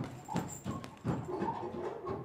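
Irregular knocks and thuds of gloved punches landing on bags and pads in a boxing gym, a few a second, with faint voices in the background.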